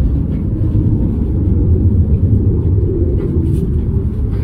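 Steady low outdoor rumble with no clear events in it, the background noise of a parking lot.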